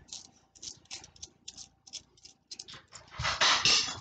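Copper pennies clicking against one another as they are pushed around and sorted by hand on a cloth, a string of short light clicks, then a louder, noisy burst lasting under a second near the end.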